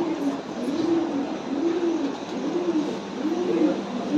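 A loft full of domestic pigeons cooing: low, rising-and-falling coos from many birds overlapping, a new coo about every half second.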